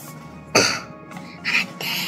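A person coughs briefly about half a second in, followed by breathy noise near the end.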